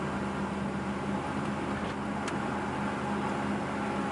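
Cabin noise of a 1977 Corvette C3 cruising on the highway: a steady drone from its 5.7-litre 350 small-block V8 under road and wind noise. The engine tone eases off from about a second in and comes back near the end.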